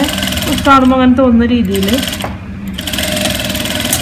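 Industrial sewing machine running steadily as it stitches a seam in cotton fabric. A voice is heard over it in the first half.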